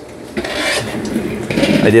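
A rough rasping, rubbing scrape lasting about a second and a half, close to the microphone.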